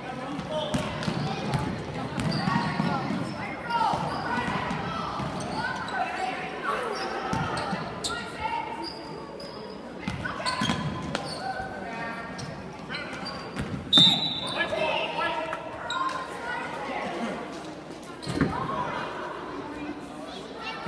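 Basketball game in a gym: a basketball dribbling and bouncing on a hardwood court, with spectators and players talking and calling out in the echoing hall. One short, loud, high-pitched squeal about two-thirds of the way through.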